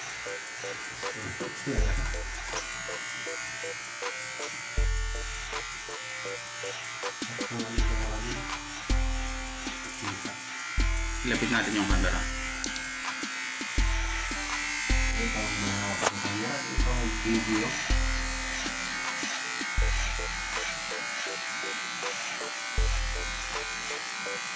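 Electric hair clipper buzzing as it cuts hair, under background music with deep bass notes every second or two.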